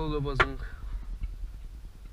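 A single sharp plastic click about half a second in, from the lid of a storage compartment in a tractor cab being handled. It is followed by faint scattered handling ticks over a low hum.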